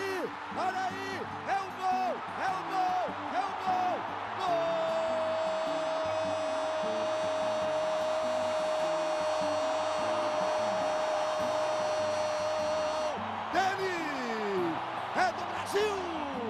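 A football commentator's goal call: a few short excited shouts, then one long held "gooool" lasting about eight seconds that sinks slightly in pitch and breaks off, over stadium crowd noise.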